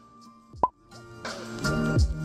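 A short, quick pop sound effect, then background music with a steady beat comes in just over a second later.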